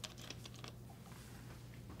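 A few faint plastic clicks and crackles from a water bottle being handled, bunched in the first second, over quiet room tone with a steady low hum.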